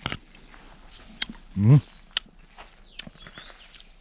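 A man chewing sour cherries, with scattered small sharp mouth clicks and one short, low hum from his voice about one and a half seconds in.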